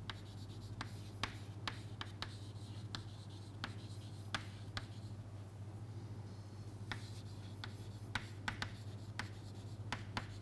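Chalk writing on a chalkboard: a string of short taps and scratches as letters are written, with a brief lull in the middle. A steady low hum runs underneath.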